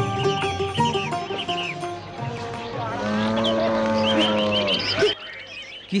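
A cow mooing once, a long, steady call lasting about three seconds, as a village sound effect after the last notes of sitar music fade, with faint high chirps near the end.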